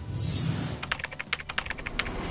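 A quick run of about a dozen keyboard-typing clicks, a sound effect starting about a second in, over soft low background music.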